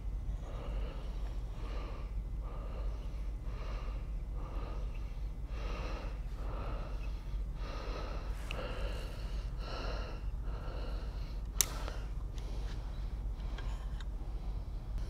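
A man breathing close to the microphone in a steady rhythm, a little under one breath a second, over a low steady hum. A single sharp click comes near the end.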